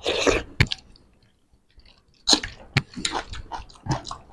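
Close-miked chewing and wet mouth noises from people eating rice with their hands, with short clicks and smacks, and fingers squelching rice on the plates. It opens with a short loud burst of noise, goes quiet for about a second in the middle, then picks up again in a busy run of smacks.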